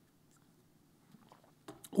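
Near silence in a small room, a short pause in a man's speech, with a few faint clicks in the second half and his voice starting again at the very end.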